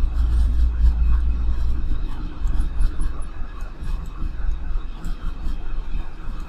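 Steady low background rumble with scattered faint clicks.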